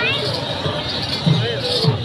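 Mourners beating their chests in matam: a rhythm of dull thuds, two to three a second, under the crowd's chanting voices.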